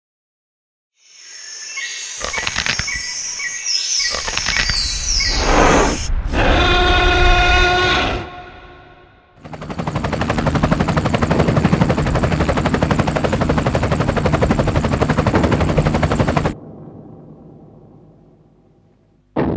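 Film sound effects. Gliding whistling tones and several impacts come first, then a steady chord of tones for about two seconds. After that a fast, even rattle lasts about seven seconds and cuts off suddenly.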